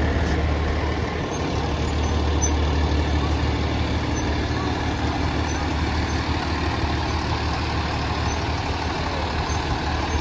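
Pierce Enforcer fire engine's diesel engine running as the truck rolls slowly past, a steady low drone.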